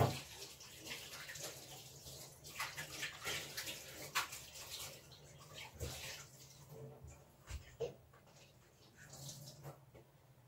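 Pot of borscht boiling on a gas stove: soft, irregular bubbling and popping of the soup surface, over a faint steady low hum.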